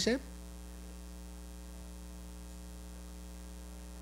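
Steady low electrical mains hum from the sound system, holding at an even level.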